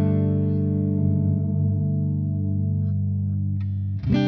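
Overdriven electric guitar chord held and ringing out through an MXR Carbon Copy Deluxe analog delay pedal, slowly fading away.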